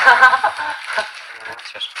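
Men's voices at first, then a quieter stretch with a few small clicks.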